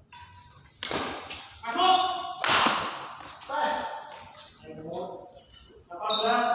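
Men's voices shouting and calling out in a large echoing hall during a badminton rally, with two loud noisy bursts about one second and two and a half seconds in.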